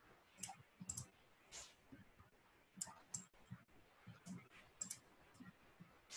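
Faint computer mouse clicks, about ten at irregular intervals, some in quick pairs, over a quiet room.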